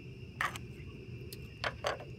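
A few short, sharp scrapes and taps of a spoon and a silicone spatula against a nonstick frying pan as rust powder is tipped in, over a steady low background hum.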